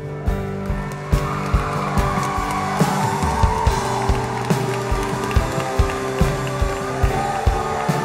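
Live worship music from the church band: held keyboard chords over a steady kick-drum beat of about two a second, swelling a little about a second in.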